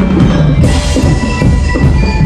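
Drum and lyre band playing: drums keep a steady beat under ringing bell-lyre notes, with a bright crash about half a second in.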